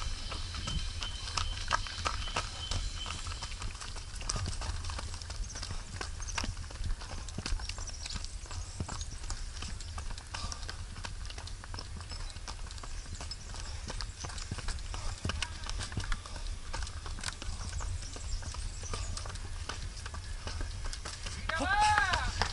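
Running footsteps on a dirt and stony trail, a run of quick footfalls, with a steady low wind rumble on the microphone.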